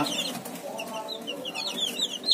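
A brood of week-old gamefowl chicks peeping, with many short, high chirps that each slide downward in pitch, overlapping in quick succession.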